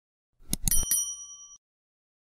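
Subscribe-button animation sound effect: a few quick mouse clicks, then a single bell ding that rings for about half a second.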